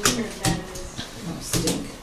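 Playing cards snapped down onto a wooden tabletop, a few sharp slaps: one at the start, one about half a second in, and two close together about a second and a half in.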